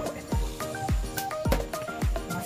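Background music with a steady beat: a deep kick drum about every half second under short, repeating electronic melody notes.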